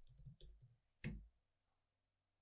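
Faint computer keyboard keystrokes, a few quick clicks, then one louder click about a second in.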